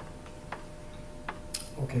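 A few short, sharp clicks spaced irregularly over a quiet room background, then a man's voice starts near the end.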